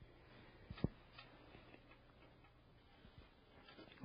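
Near silence with a few faint clicks of small front-panel connector plugs being handled and pushed onto motherboard header pins inside a PC case, one sharper click just under a second in.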